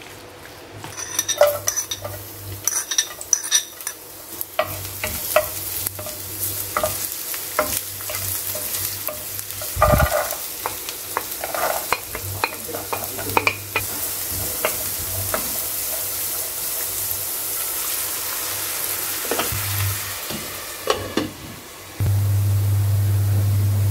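A spoon stirring thick corn batter in a stainless steel bowl, clinking against the metal, then shallots, garlic and diced carrots sizzling in oil in a nonstick wok while a spatula scrapes and taps. There is one heavy thump about ten seconds in, and the sizzle grows steadier and louder in the second half.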